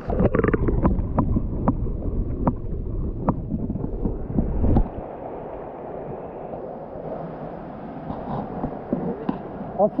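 Spring water heard through a camera held under the surface: a loud, muffled, dull rush with several sharp clicks and knocks for about five seconds. The camera then comes out, and the rest is a quieter, steady sound of running water.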